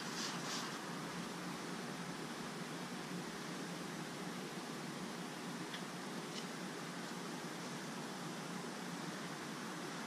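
Steady, even background hiss of outdoor ambience, with a few faint rustles in the first half-second and two faint ticks about six seconds in.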